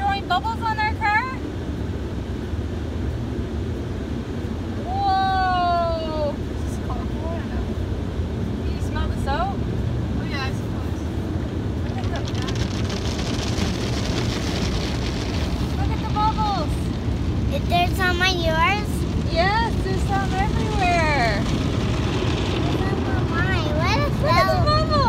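Automatic car wash heard from inside the car: a steady low rumble of the spinning cloth brushes and machinery against the body, with a hiss of water spray from about twelve to sixteen seconds in. A child's high voice calls out several times.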